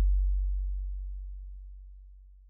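The last deep electronic bass note of a Brazilian funk track dying away: a low, steady boom with no other instruments, fading smoothly all through.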